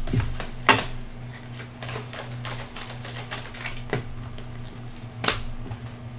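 Tarot cards being handled and drawn from a fanned-out deck on a table: a few sharp clicks and taps, spaced irregularly, over a steady low hum.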